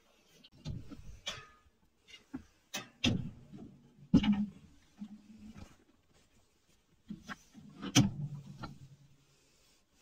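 Small hinged wooden doors of a pigeon breeding cage being opened and shut by hand, giving a series of sharp knocks and clatters, the loudest about four seconds in and again near the eight-second mark.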